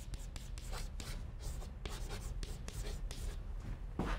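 Chalk writing on a blackboard: a faint, irregular run of short scratches and taps as letters are chalked.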